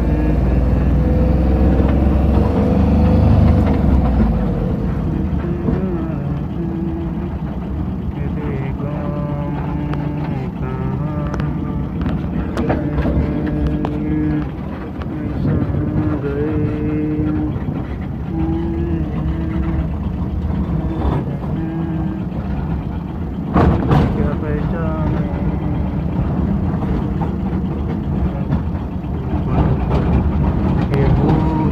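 Vehicle engine and road noise heard from inside the cab while driving, with a melody of held, stepping notes over it and a sharp knock about 24 seconds in.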